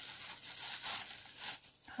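Plush toy being handled: soft fabric rustling and rubbing in a few short swishes as it is moved about and lifted toward the camera.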